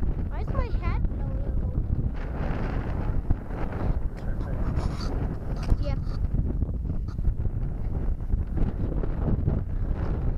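Wind buffeting the microphone as a steady low rumble, with brief high-pitched vocal sounds about half a second in and again near six seconds.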